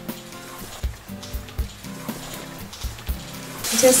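Soft background music with a regular light beat. Near the end, a puri of wheat dough is dropped into very hot oil and the oil starts sizzling loudly.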